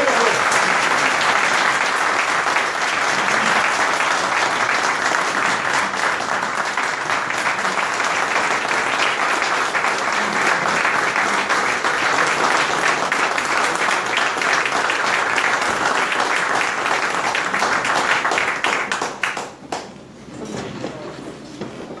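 Audience applauding at the end of a speech, steady for nearly twenty seconds, then dying away a couple of seconds before the end.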